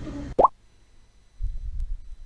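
A short, quick upward-gliding "plop" editing sound effect marking a scene transition, following the tail of background music. A faint low rumble follows in the second half.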